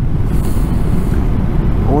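BMW R 1250 GS motorcycle on the move: a steady low rumble of wind and road noise with the boxer-twin engine running underneath.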